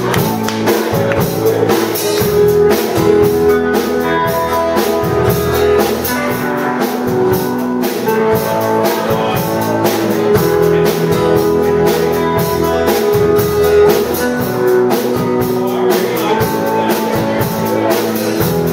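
A live band playing: acoustic and electric guitars, bass guitar and drum kit, with a steady drum beat.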